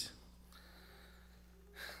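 Near silence with a steady low electrical hum, then near the end a man's short breath drawn in at the microphone just before he speaks again.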